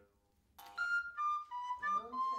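A small wooden end-blown flute played: after a short pause, a few clear held notes that step down in pitch.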